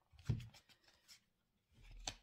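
Faint rustling and soft ticks of tarot cards being handled as one is drawn from the deck.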